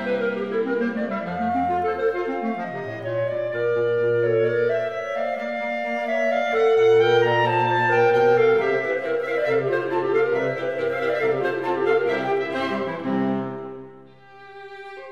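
Classical chamber music: a clarinet and basset horn with strings playing a melodic passage in F major over sustained low bass notes, the phrase falling away to a brief break at the very end.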